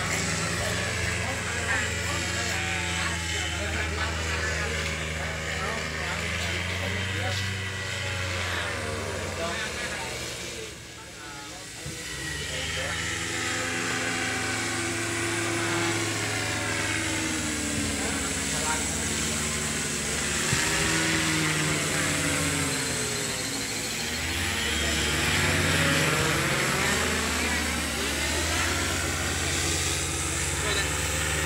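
Paramotor engine and propeller droning steadily overhead, its pitch rising and falling as it flies past, with a brief dip in loudness about eleven seconds in.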